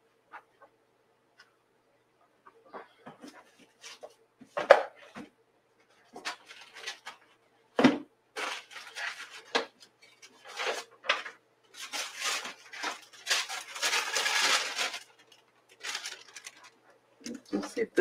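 Rummaging through art supplies: scattered clicks and clunks, with a couple of sharper knocks early on, then a longer stretch of paper rustling and handling about two-thirds of the way through, over a faint steady hum.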